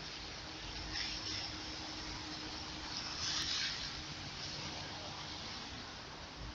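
Steady outdoor hiss with a faint, steady low hum underneath. The hiss swells briefly about a second in and again, more strongly, around three seconds in.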